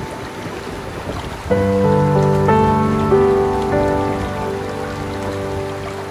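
Rushing river water running over rocks in rapids, a steady noisy wash, with soft music of slow, held chords coming in about one and a half seconds in and becoming the louder sound.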